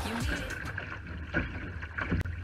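Background music fades out in the first half. It leaves the sound of a Laser dinghy sailing in heavy wind: wind on the microphone and water rushing along the hull.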